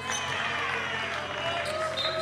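Live basketball game sound: indistinct voices of players and spectators over the play, with a basketball bouncing on the court.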